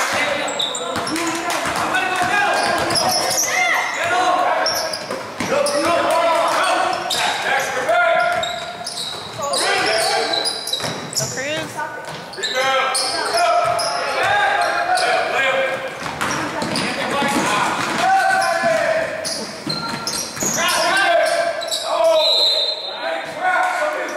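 A basketball bouncing on a hardwood gym floor, with many overlapping voices of players, coaches and onlookers calling out, echoing around a large gym.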